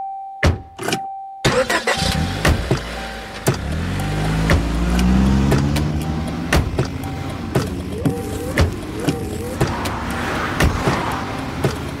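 Car sound effects opening a radio ad: a steady chime-like tone with a few clicks, then an engine starts and speeds up, its pitch rising, over a run of sharp clicks.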